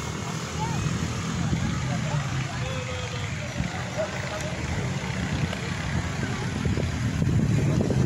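Wind buffeting a phone's microphone with a low rumble that grows louder near the end, over faint distant voices.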